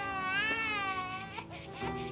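An infant crying: one long wavering wail that breaks off a little past halfway.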